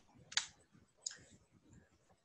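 Two clicks from a computer keyboard, the louder one about a third of a second in and a softer one about a second in.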